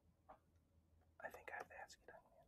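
Near silence, then faint whispering for most of the last second.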